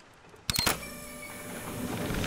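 A lever thrown with two quick clicks about half a second in, then a steady mechanical whirr as a fishing boat's net winch starts lowering the nets.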